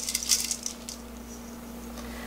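Salt sprinkled by hand onto cubed radish in a stainless steel bowl, salting it for kkakdugi: a brief patter of grains in the first half second or so, then only a faint steady hum.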